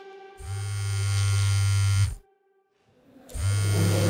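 Mobile phone vibrating with an incoming call: two long buzzes of under two seconds each, with about a second of silence between them.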